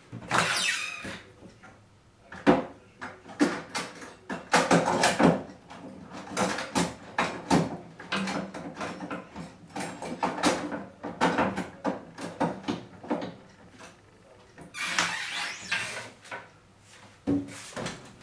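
Kitchen handling sounds: a run of irregular knocks and clatter, with a longer rustling hiss near the start and another about fifteen seconds in.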